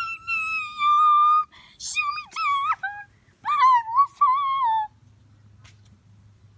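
A girl singing in a very high voice: one long held note for about a second and a half, then a string of shorter, wavering notes that stop about five seconds in.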